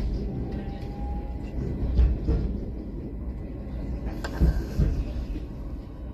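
Steady low rumble of a moving vehicle heard from inside, with a few knocks or jolts, the sharpest about two seconds in and a cluster around four and a half seconds.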